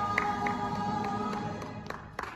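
A group of singers holding a final chord in a large hall, the chord fading away through the second half, with a few sharp taps during it.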